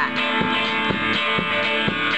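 Live band playing an instrumental passage: strummed guitar over a steady beat of about two strokes a second.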